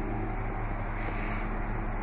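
Steady low hum of the Jeep Wrangler's 3.6-litre Pentastar V6 idling after a remote start, heard from inside the cabin.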